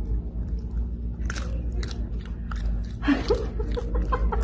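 A Matschie's tree kangaroo chewing food, with several sharp crunches in the middle as it bites down.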